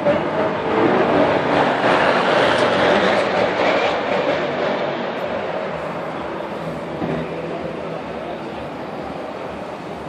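A track-day car passing at speed along the pit straight. Its engine and tyre noise swells over the first few seconds, then fades steadily as it goes away.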